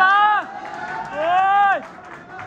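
Men in the audience shouting long, drawn-out cheers, two calls whose pitch arches and then drops away at the end.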